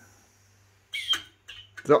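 Compressed-air supply to a Wilesco D305 model steam engine shut off: a faint hiss dying away over a steady low hum, then a short hiss about a second in.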